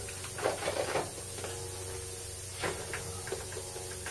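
Scattered faint knocks and rattles of a work light on its stand being handled and set up beside the bench, over a steady low hum.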